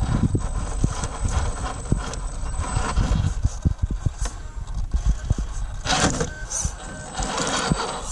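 HPI Venture radio-controlled scale crawler climbing a steep rock step: its small electric motor and drivetrain whine under throttle, with many short knocks and a scratchy scrabble about six seconds in as the tyres and chassis work against the rock. A low rumble of wind on the microphone runs underneath.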